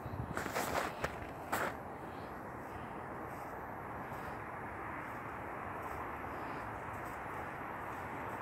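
A few short crunching steps in snow in the first two seconds, then only a steady, even background noise.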